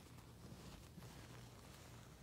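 Near silence: a faint low room hum and a few faint soft taps of fingers pressing on the silicone buttons of a Dimpl Digits fidget toy, which are too stiff to pop.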